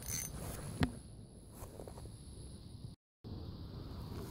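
Handling noise from an ultralight spinning rod and reel: faint scrapes and a single sharp click about a second in, typical of the reel's bail or line being worked. The sound cuts out completely for a moment near the end.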